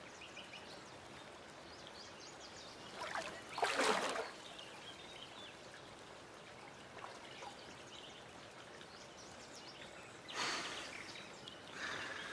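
Shallow spring-fed water trickling and lapping, with a brief louder splash about four seconds in and another near the end.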